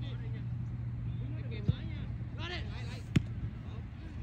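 Two sharp thuds of a soccer ball being kicked, about a second and a half apart, the second louder, over distant shouts of players and a steady low hum.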